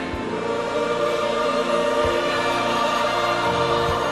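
Choral music: a choir holding long, sustained chords.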